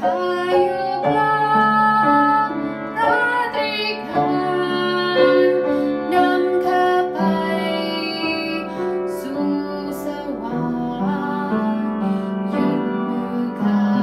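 A woman singing a Christian song in the Iu Mien language, holding long sung notes over keyboard accompaniment.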